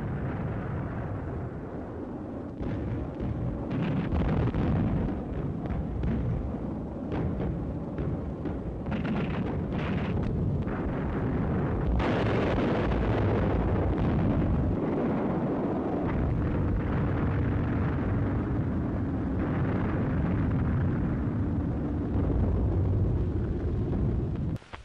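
Anti-aircraft guns firing in dense, continuous volleys with explosions, heard on an old wartime film soundtrack. A faint steady hum joins in for several seconds past the middle.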